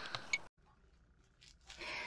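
An edit cut: faint sound breaks off abruptly about half a second in, leaving about a second of dead silence, then faint rustling near the end.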